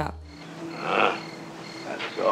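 Crickets chirping at night, a thin high chirp repeating evenly about two to three times a second, with a brief soft swish about a second in.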